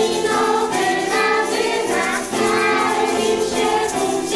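A group of young children singing a Christmas carol together in unison, with a woman's voice singing along, in sustained notes that change about once a second. Small hand shakers add a light rattle.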